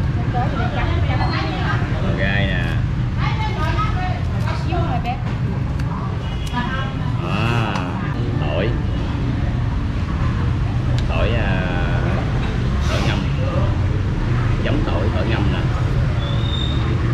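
Indistinct voices of people talking nearby over a steady low rumble of street traffic.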